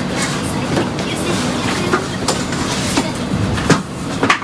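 Steady outdoor background rumble with several scattered light clicks and knocks, one sharper knock near the end.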